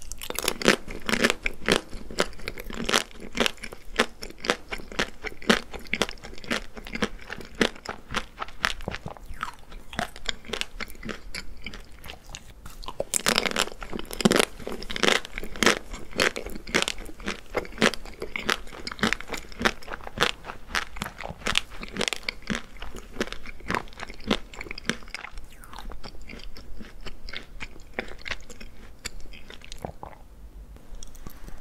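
Close-miked crunching and chewing of a small chocolate-coated ice cream bite, its hard chocolate shell cracking between the teeth. A louder run of crunches comes about halfway through.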